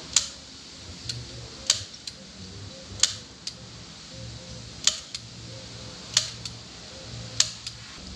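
Hand staple gun firing into a wooden boat-trailer bunk board to fasten the bunk carpet: six sharp snaps, one every second or so, each trailed by a softer click.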